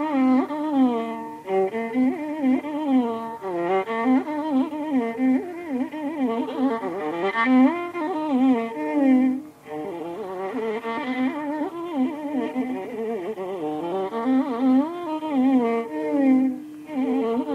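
Carnatic violin playing in raga Mohanam: a single bowed melodic line that slides and oscillates between notes (gamakas), with a brief break in the phrase about nine and a half seconds in.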